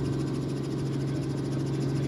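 Steady drone of a news helicopter's engine and rotors heard inside the cabin through the reporter's microphone: one low hum holding an even pitch.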